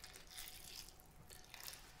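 Faint trickle of water poured from a plastic jug into a seed-starting tray of peat pellets.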